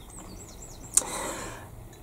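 Faint bird chirps in the background during the first second. Then a single sharp click about a second in, followed by a soft, short hiss.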